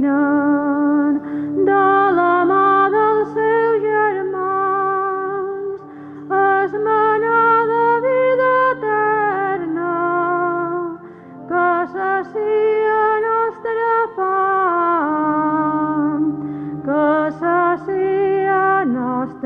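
A solo voice sings a slow, sacred melody with wide vibrato over held low accompanying notes. The phrases are separated by short pauses.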